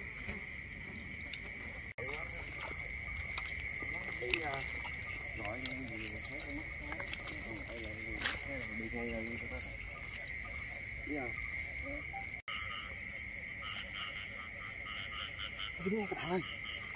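Night chorus of frogs and insects in a flooded rice field: a steady high-pitched trill, with a faster pulsing chirp joining in near the end.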